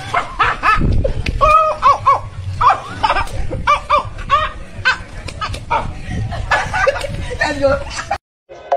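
Several people's voices shouting, yelping and laughing in short excited cries, over a low rumble.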